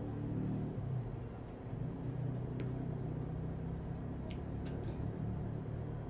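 Low, steady background rumble and hum, with a few faint clicks in the middle, in a pause between recited verses.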